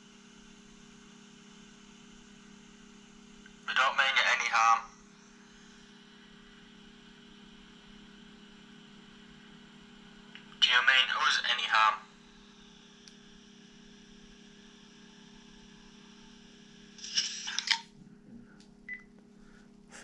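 A steady low electrical hum with faint hiss, broken three times, about four, eleven and seventeen seconds in, by short snatches of voice-like sound.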